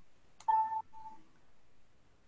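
A sharp click followed by a short two-part electronic beep: one brief tone, then a shorter, slightly lower one.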